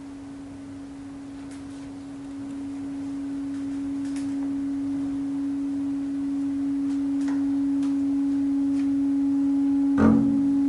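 One long held note, nearly a pure tone, swelling steadily louder from about two seconds in, played soft and sustained in a jazz-classical trio for clarinet, double bass and piano.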